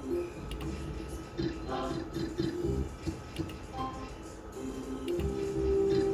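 Book of Ra Deluxe slot machine playing its electronic free-spin sounds: a jingle of short notes over clicking reel-stop tones, with a long held tone near the end as the next spin's result comes in.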